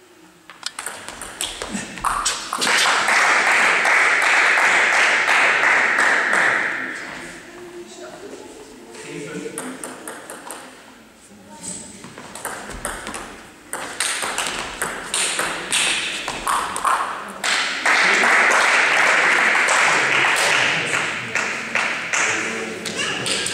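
Table tennis rallies: the celluloid ball clicks sharply off bats and table in quick, irregular exchanges. Twice, near the start and near the end, a long loud spell of crowd noise from the spectators rises over the clicks after a point.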